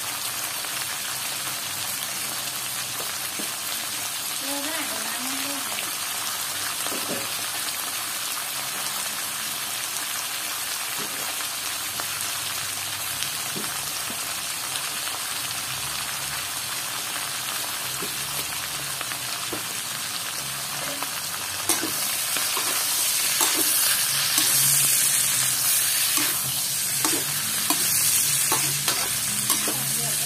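Pork belly cubes sizzling in a hot metal wok, a steady hiss. About two-thirds of the way through the sizzle gets louder and a metal spatula starts scraping the wok as the meat is stirred.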